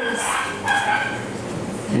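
Two-month-old Belgian Malinois puppy giving short high whines, one right at the start and a longer one about a second in.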